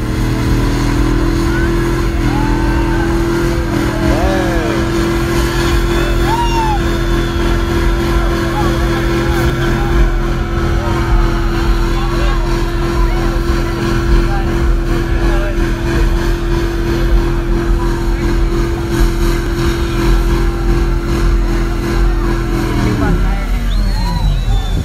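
Pickup truck engine held at a steady high rev through a burnout, its rear tyres spinning in place on the pavement; the revs fall away near the end. Crowd voices and shouts run underneath.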